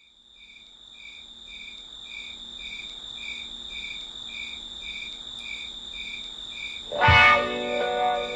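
Opening of a late-1960s psychedelic rock track: out of silence, a steady high tone fades in together with regular cricket-like chirping beeps about twice a second. About seven seconds in, an electric guitar chord is struck loudly and the band comes in.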